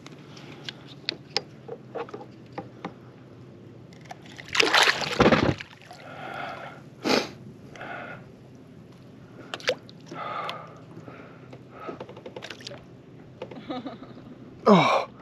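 A barracuda splashing in shallow water beside a kayak as it is landed. There are small knocks early on, a loud splash lasting about a second around the middle, and a shorter splash a couple of seconds later.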